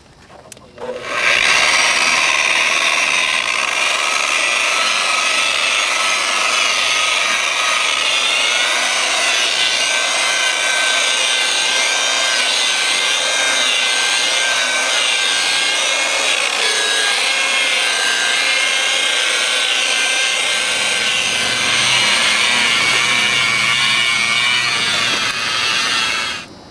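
Corded electric rotary polisher running with a foam pad pressed against a van's painted body panel, polishing in glaze: a steady motor whine whose pitch wavers slightly as the pad is worked across the paint. It starts about a second in.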